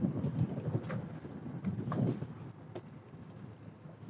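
Wind buffeting the microphone on an open boat: an uneven low rumble that swells about half a second in and again about two seconds in, with a few faint clicks.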